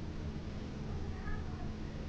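Steady low hum of an elevator car's machinery, with a faint brief electronic tone a little past the middle.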